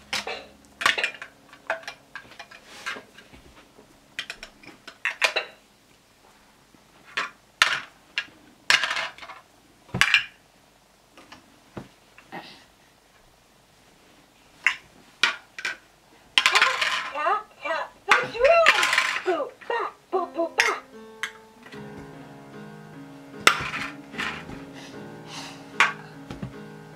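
Hard plastic shape-sorter blocks clicking and knocking against each other and a plastic bucket as they are handled and dropped, many separate knocks. A short stretch of voice comes about two-thirds of the way in, then an electronic toy melody starts playing.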